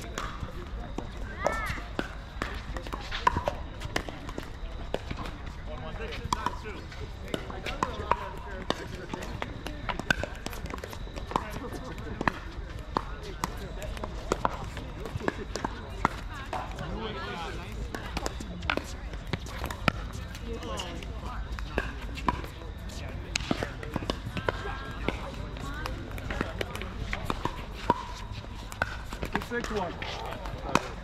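Pickleball paddles hitting a plastic ball in rallies: sharp pops at irregular intervals, several every few seconds. Players' voices talk underneath.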